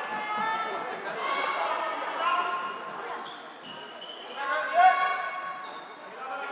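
Players' voices calling out in a reverberant sports hall during floorball play, with one louder shout about five seconds in. Knocks of sticks and the plastic ball on the court floor come in among the voices.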